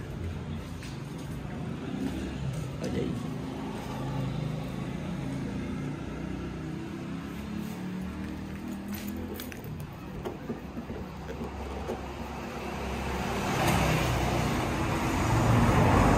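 Street background: a steady low rumble of traffic with faint music, swelling louder near the end.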